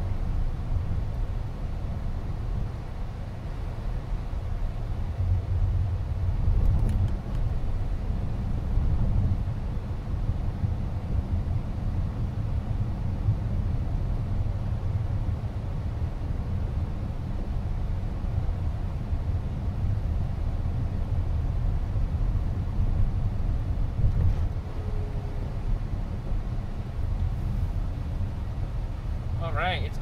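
Steady road and tyre rumble inside the cabin of a moving Chrysler Pacifica minivan, swelling slightly a couple of times.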